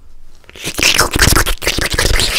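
Gurgling sound effect made with the mouth right up against a microphone, a loud, rapid, raspy gargle that starts about half a second in, dubbed over gulps of water from a glass bottle.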